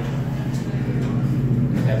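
Dover hydraulic elevator running with a steady low-pitched hum as the car sets off on a ride.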